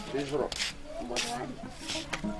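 A person speaking, with several short, sharp hissing sounds between the phrases, over a low steady hum.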